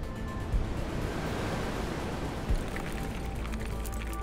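Sound design for an animated logo intro: a whooshing wash of noise that swells and fades, with two short low booms, about half a second and two and a half seconds in.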